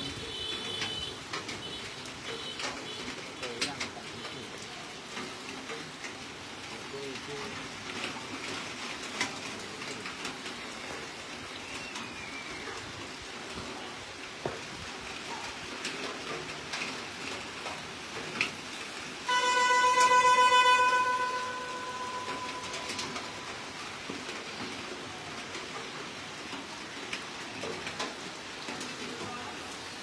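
Steady low background noise with scattered faint clicks around a charcoal spit roast. About twenty seconds in, a loud steady horn-like tone with many overtones sounds for about two seconds and stops.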